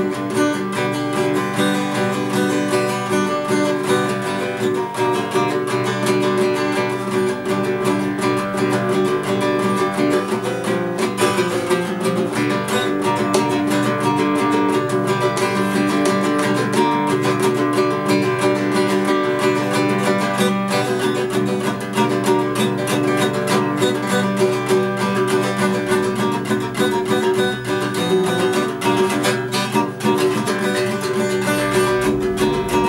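Steel-string dreadnought acoustic guitar strummed steadily and continuously, chords ringing under quick repeated strokes: a self-taught learner's practice strumming.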